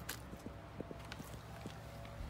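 Footsteps on a wooden deck: a few soft, irregularly spaced knocks.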